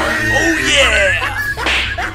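Comedy sound effects edited over background music, with a quick falling swoosh near the end.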